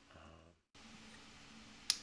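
Faint room tone with a brief dead-silent gap about a third of the way in, then a single sharp click near the end.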